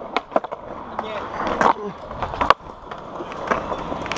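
Skateboard wheels rolling over smooth concrete, with a few sharp knocks from the boards; the loudest knock comes about two and a half seconds in.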